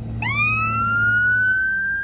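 Emergency vehicle siren starting a wail: the pitch sweeps up steeply a fraction of a second in, then climbs slowly and holds high.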